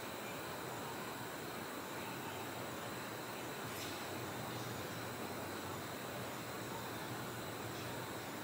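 Steady faint hiss of room tone and recording noise, with no distinct sound event.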